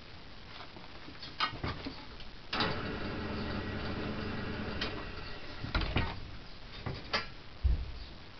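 Workshop tools being handled: scattered knocks and clunks. A steady hum starts a little before halfway, lasts about three seconds and then fades.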